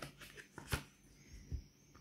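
Tarot cards handled in the hands: a few light clicks and rustles as one card is drawn from a fanned deck, the sharpest just under a second in.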